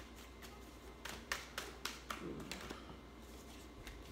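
Tarot cards being shuffled and handled: a scattered run of light, sharp snaps and taps, several a second at times, with short gaps between.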